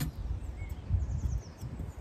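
Outdoor ambience: birds chirping faintly over a low, uneven wind rumble on the microphone, with a single click at the start.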